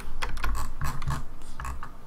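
Computer keyboard being typed on: a run of irregular key clicks.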